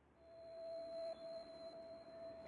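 A faint, steady pure tone, like a held sine-wave note, fading in just after the start and holding, with a fainter high whine above it.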